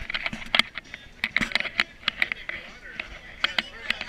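Indistinct talk among a small group of people sitting together, with many short, sharp clicks and knocks scattered through it.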